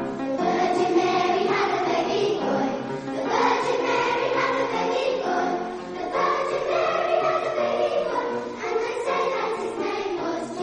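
A school children's choir singing, in phrases a few seconds long.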